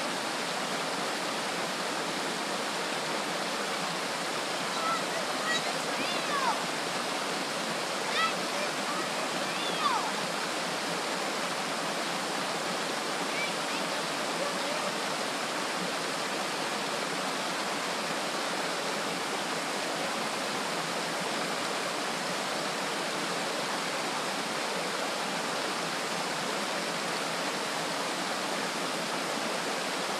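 Steady rushing of a forest waterfall and the creek below it. A few brief higher-pitched sounds stand out over it between about five and ten seconds in.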